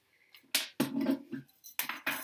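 A few short clatters and rustles of objects being handled and set down, in irregular bursts with brief silences between.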